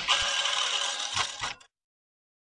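Camera-themed logo sound effect: a steady mechanical rattling that lasts about a second and a half, with two soft knocks near its end, then cuts off suddenly.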